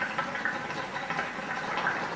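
Hookah water base bubbling as the smoker draws a long pull through the hose: a steady run of small, irregular gurgling pops.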